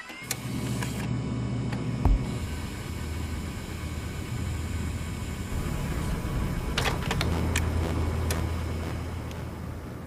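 A low, steady rumble like a car engine running, with a sharp click about two seconds in and a few more clicks between about seven and eight seconds in.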